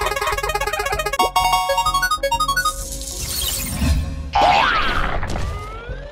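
Cartoon sound effects over background music: a rapid run of ticks at the start, then a descending run of notes, a swish, and wobbling, rising pitch glides in the second half.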